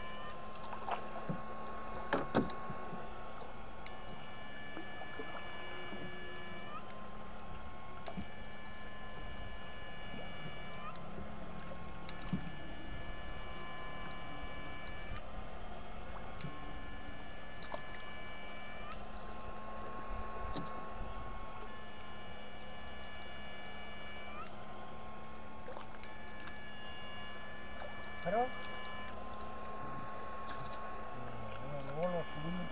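Electrofishing shocker (a 'PDC 8 FET' setrum inverter) running, with a steady hum under a high-pitched electronic whine. The whine cuts in and out every few seconds as the current is switched on and off to the electrodes in the water. A few short knocks come near the start and near the end.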